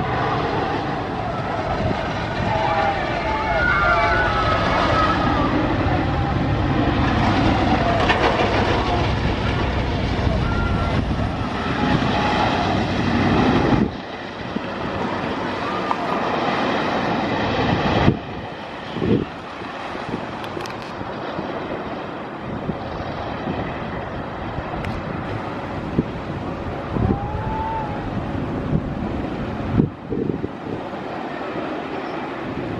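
Wooden roller coaster train rumbling along its wooden track, with riders' screams rising and falling over it early on. The loud rumble drops off suddenly about fourteen seconds in and again at about eighteen, leaving a fainter, steadier rumble.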